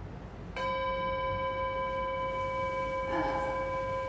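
A bell-like chime strikes about half a second in and rings on steadily with several clear overtones, marking the end of a 90-second timed hold.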